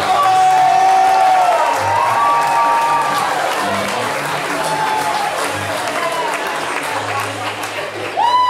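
Audience applauding and cheering with music playing.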